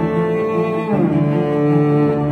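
Native Instruments Stradivari Cello sample library playing a demo phrase of layered, sustained cello notes, with a falling slide between notes about a second in, after which lower notes come in.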